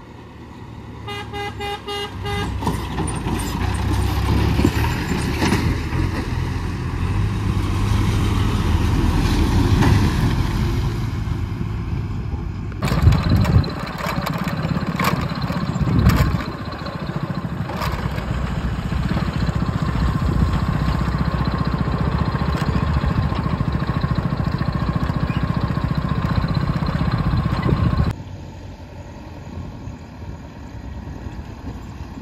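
A vehicle horn sounds in short pulses, then heavy diesel engines grow louder as a backhoe loader and a tipper truck approach. After that comes steady engine and road noise, with a few knocks, behind a tipper truck on a rough dirt track.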